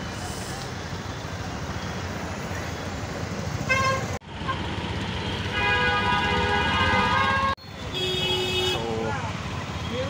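Vehicle horns honking in road traffic over a steady rumble of traffic and wind: a short honk just before four seconds, a long horn blast of about two seconds in the middle, and a shorter, lower-pitched honk a little later. The sound breaks off abruptly twice.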